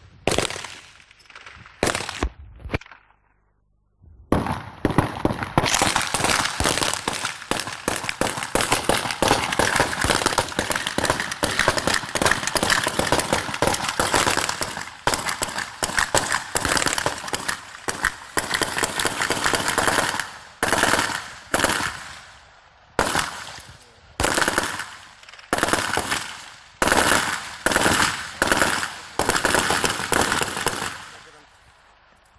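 Gunfight with automatic rifles: a few separate shots, a brief pause, then long continuous volleys of rapid automatic fire from several rifles at once. Over the last ten seconds the fire breaks into short bursts about a second apart.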